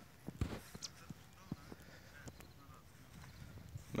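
Faint, irregular clicks and soft knocks, a few to the second, over a quiet outdoor background.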